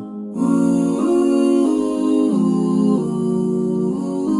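Background music: a slow keyboard melody of held notes, each changing to the next about every two-thirds of a second, after a brief gap at the start.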